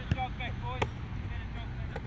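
Faint voices of people calling on a training field, with two sharp knocks about a second apart and a steady low hum underneath.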